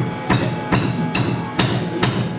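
A live rock band playing: drum kit and electric guitars, with a steady beat of a little over two strikes a second.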